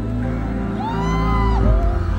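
Live concert music over the PA: an instrumental passage of the song with sustained deep bass and held chord notes, before the vocals come in. About a second in, a single high whoop rises, holds and falls over the music.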